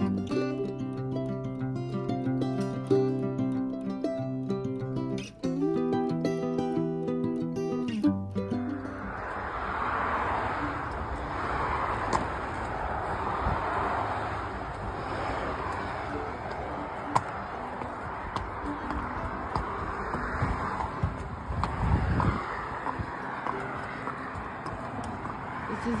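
Plucked-string acoustic music for about the first eight seconds. It cuts to the steady, swelling rush of car traffic passing on a road below a bridge, heard from horseback on the bridge with a phone microphone.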